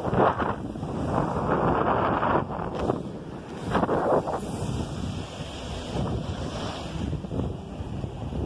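Strong wind buffeting the microphone over waves breaking on the beach, with louder surges in the first half.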